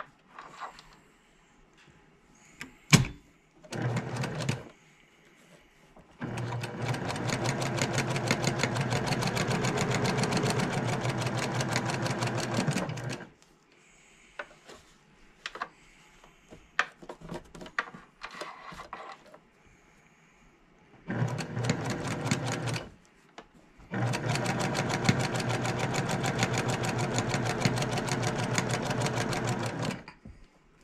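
Electric domestic sewing machine stitching seams through quilt fabric in runs: a brief burst about four seconds in, a long run of about seven seconds, then two more runs near the end. Small clicks and fabric handling come between the runs, with a sharp click about three seconds in.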